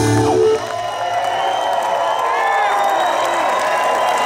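A live rock band's last note cuts off about half a second in, then a concert crowd cheers and whoops.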